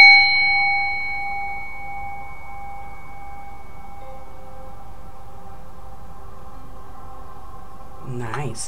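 Hammered metal singing bowl ringing out after a single mallet strike. Its high overtones fade within the first two seconds or so, while its low hum lingers faintly for several seconds more.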